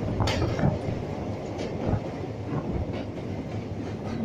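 Train running across a steel truss bridge, heard from on board: a steady rumble with a few uneven clacks each second as the wheels pass over the rail joints.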